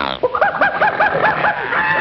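Cartoon chicken-clucking effect: a quick run of short, arched clucks at about six a second, with a brief break just before the end.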